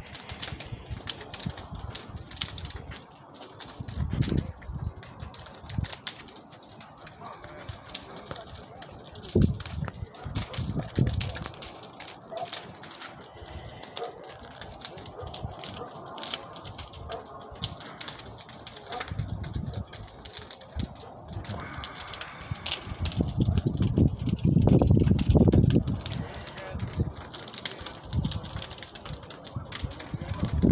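Burning house crackling and popping irregularly, with several swells of low rumble from wind on the microphone, the longest about two thirds of the way through.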